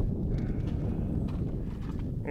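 Footsteps on a paved road as the camera is carried in closer, over a steady low rumble.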